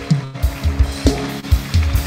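Church band music, with held keyboard chords over repeated low bass and drum beats, and the congregation applauding over it.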